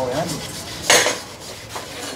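A short, sharp clatter of hard objects knocking together about a second in, with fainter clinks around it.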